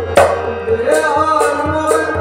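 Kashmiri folk music: a tumbaknari goblet drum struck with the hands in a quick rhythm over a sustained harmonium, with a voice singing.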